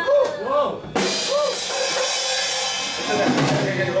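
A drum kit hit with a crash cymbal about a second in, the cymbal ringing and fading over about two seconds.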